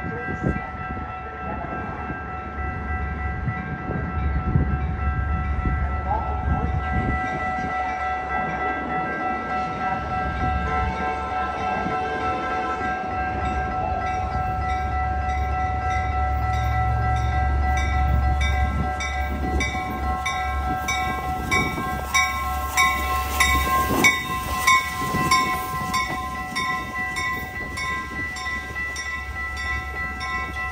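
Railroad grade-crossing warning bells ringing in a steady repeating beat, about two strokes a second, which grows sharper from about eight seconds in. A low rumble of train and wind runs underneath.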